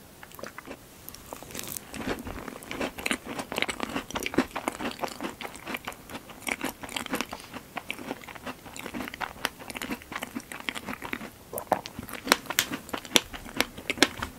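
Close-miked eating sounds: chewing a mouthful of strawberry tart, with dense wet crackles and clicks that start about a second and a half in.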